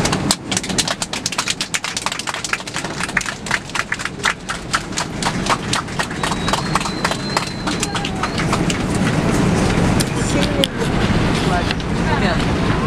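Airliner cabin during the landing roll: a steady low rumble with rapid rattling clicks, about five a second, which thin out after about eight seconds.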